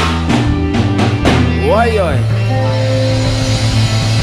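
Live reggae band playing an instrumental passage: bass and electric guitar over a drum kit, with a few sharp drum hits in the first second and a half. A brief sliding tone rises and falls about two seconds in.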